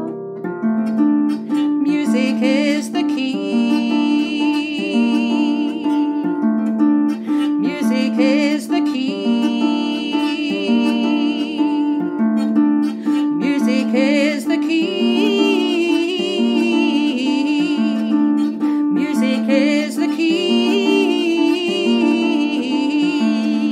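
Clarsach (small Scottish lever harp) played in a steady pattern of plucked notes, accompanying a woman singing with vibrato in phrases of about four seconds, with short pauses in the voice between phrases.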